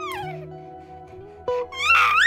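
A baby's fussing cry: a short falling whimper at the start, then a louder wavering cry near the end, over soft background music.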